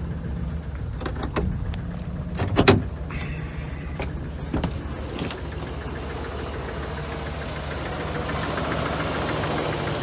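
A 2001 Dodge Ram B3500 van's natural-gas engine idling steadily, with one sharp clunk about two and a half seconds in and a few lighter clicks.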